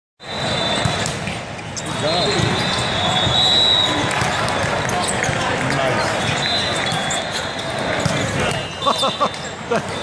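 Volleyball rally in a big hall: ball contacts and sneaker squeaks on the court over a steady din of spectators and nearby games, with a few sharp hits near the end.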